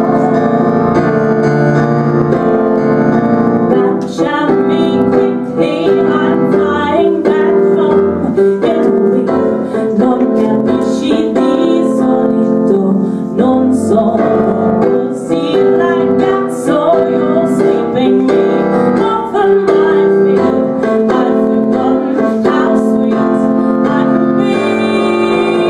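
A woman singing solo over piano chords played on a Yamaha S80 stage keyboard.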